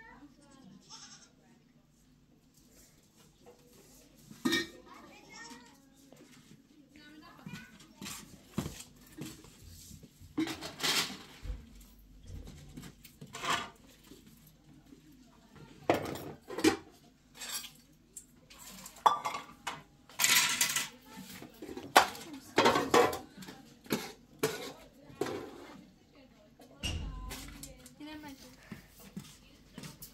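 Metal pots, pans and dishes clanking and scraping on a concrete floor as they are gathered and stacked. It is sparse for the first few seconds, then becomes a busy run of sharp clatters, some of them ringing briefly.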